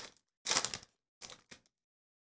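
Foil wrapper of a hockey trading card pack crinkling in several short bursts as it is torn open and pulled off the cards, the longest about half a second in.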